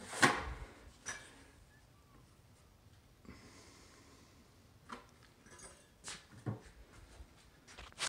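A drywall knife drawn once across wet joint compound on a taped end joint, a soft scrape lasting about a second and a half in the middle, smoothing the final pass. Short light knocks and clicks of the tool come before and after it.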